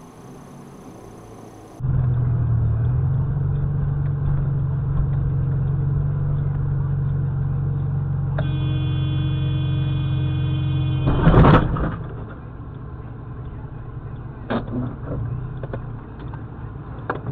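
A low steady engine drone inside a car. About eight seconds in, a car horn is held for about three seconds. It ends in a short, loud crunch of a low-speed collision between two cars.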